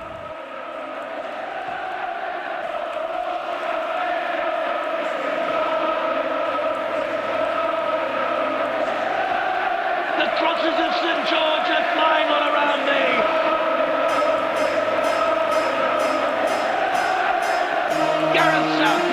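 Many voices singing a wordless chant together, long held notes that grow steadily louder, with a few shouts about ten seconds in. In the last few seconds a steady beat comes in under the singing.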